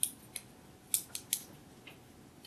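Dry-erase marker on a whiteboard: about six quick, sharp strokes and taps in two seconds.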